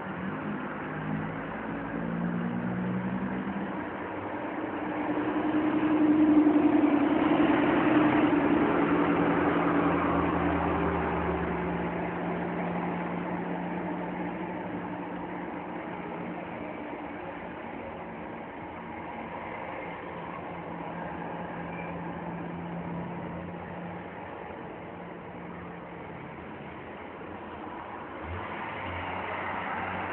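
A car engine running, swelling louder about five seconds in and then slowly fading.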